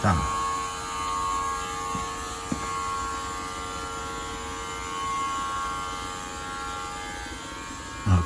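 A small smoke leak-test machine running with a steady electric buzz, pushing smoke into the carburettors to show up air leaks.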